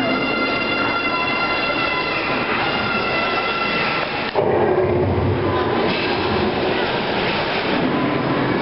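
A crowd of children screaming and shouting together for a game that calls for lots of noise: long held shrieks at first, turning a little past halfway into a lower, rougher din.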